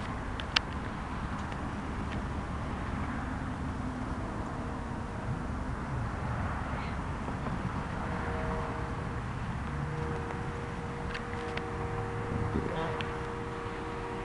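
Steady rumble of distant road traffic. From about halfway through, a droning engine hum with several steady tones is added.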